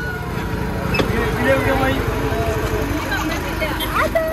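Auto-rickshaw engine running with a low, rapid throb, under people's voices talking.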